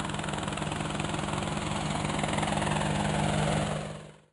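Drone's motors and propellers buzzing steadily in flight, fading out near the end.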